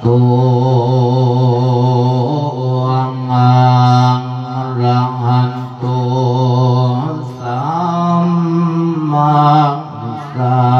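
A Buddhist monk singing a Thai thet lae sermon in a male voice, drawing out long, wavering held notes in a chanted melody. The pitch steps up about seven and a half seconds in.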